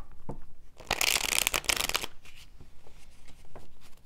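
A deck of tarot cards being shuffled by hand: a dense burst of fluttering card noise about a second in, lasting about a second, with softer separate taps and slides of the cards before and after it.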